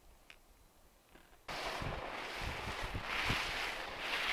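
Near silence, then about one and a half seconds in a sudden, steady rushing of wind on the microphone with low thumps, as the camera follows a skier downhill.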